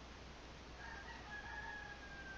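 A faint, drawn-out animal call with a steady, slightly falling pitch, starting about a second in.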